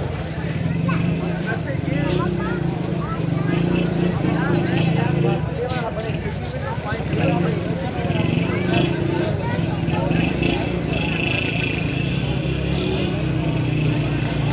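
Crowd chatter: many people talking at once in a packed pedestrian street, over a steady low hum.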